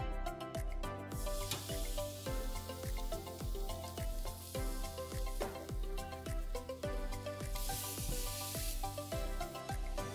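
Background music with a steady beat and held chords, and a bright hissing layer that comes in about a second in.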